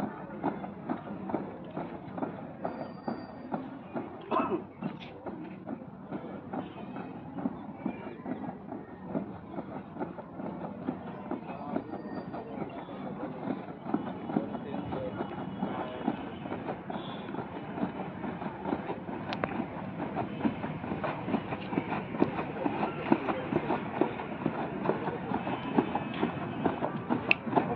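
Boots of a squad of cadets stamping and scuffing on a dry dirt ground in drill: a continuous, dense clatter of footfalls that grows louder in the second half.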